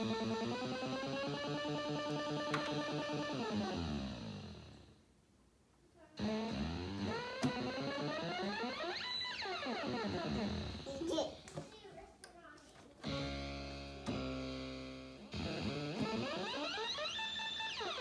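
Moog Grandmother analog synthesizer played at the keys: buzzy sustained notes whose pitch slides down and up in sweeps, a short break about five seconds in, then quick stepping notes before more rising and falling sweeps.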